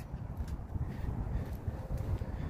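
Low, uneven rumble of wind buffeting and handling noise on a handheld phone microphone, with no distinct event.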